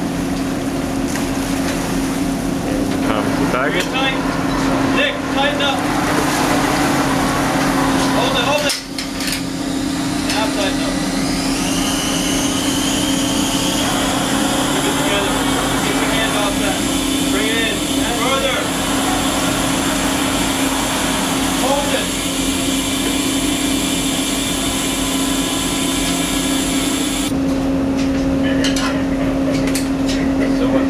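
Research ship's deck winch and tuggers hauling a rosette water sampler aboard: a steady mechanical drone with a held hum, and a faint whine that slowly rises in pitch from about twelve seconds in.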